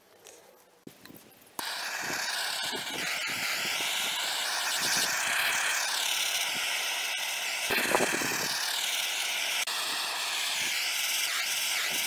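Handheld gas blowtorch flame hissing steadily while it scorches a wooden ash hammer handle. The hiss cuts in suddenly about a second and a half in, and its tone shifts as it goes.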